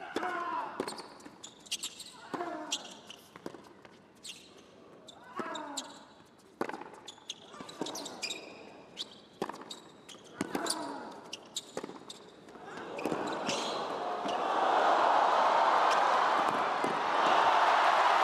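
Tennis rally: racket strikes on the ball roughly every one and a half seconds, about nine in all. Then a crowd cheering and applauding swells up about two-thirds of the way in and holds, louder than the rally, as a passing shot wins the point.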